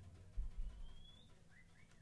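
Sparse, quiet improvised playing by the organ, bass and drums trio: a low note about half a second in, then a few faint, high, sliding chirp-like tones, one rising glide and two short arcs.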